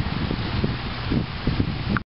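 Wind buffeting the camera microphone outdoors, a rough low rumble under a steady hiss.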